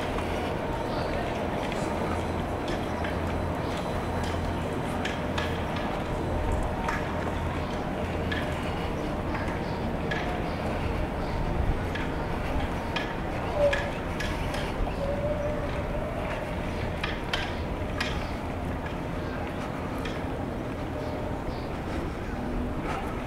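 Outdoor ambience: a steady low background rumble with faint, indistinct voices and light scattered ticks.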